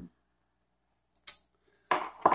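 Near silence, room tone only, broken once about two thirds of the way through by a single brief, soft noise.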